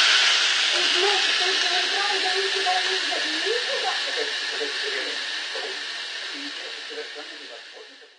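Chicken breasts sizzling between the hot plates of an Endever electric contact grill: a loud hiss of sizzle and steam that starts suddenly as the lid is shut and slowly fades away.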